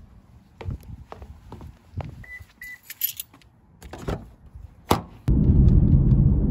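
Scattered knocks and clicks of a door and handling while moving through a house, with two short electronic beeps about two seconds in. About five seconds in a loud, steady low rumble sets in suddenly, heard inside a car.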